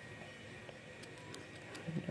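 Faint scratching of a drawing pen on paper, with a few light ticks.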